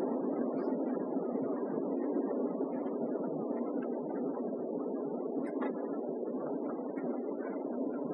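Steady rushing background noise of the lecture hall, with a few faint scattered clicks.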